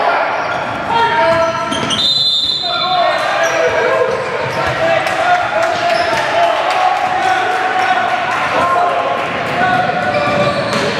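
Sounds of an indoor basketball game: a ball bouncing on a hardwood court among sneaker squeaks and players' voices calling out, echoing in a large gym.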